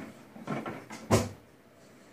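A knife cutting through a grill-pressed, crusty Cuban sandwich on a plate. There is faint handling and one dull thump about a second in.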